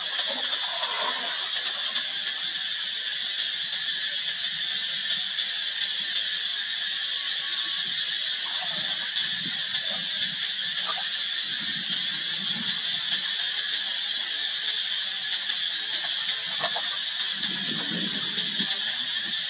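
Macaques splashing as they swim in a pond, with a few faint short squeaks, over a steady high-pitched hiss.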